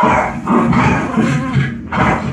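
A dog growling and barking in a rough, broken string of calls that dips briefly near the end.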